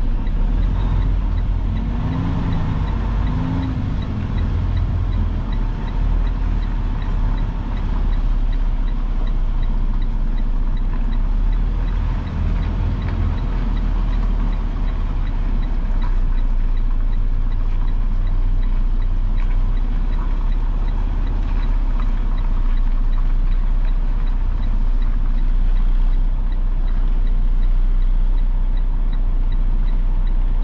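Semi truck's diesel engine running steadily at low speed, heard from inside the cab, as the tractor-trailer is slowly backed up.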